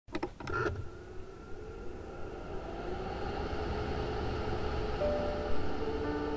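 A bladed electric fan spinning up after a few clicks, its motor whine rising in pitch over a low rumble of buffeting air that grows steadily louder. Piano notes come in near the end.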